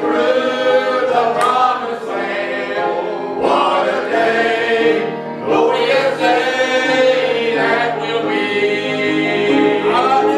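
Congregation singing a hymn together, many voices holding long notes in phrases of a few seconds.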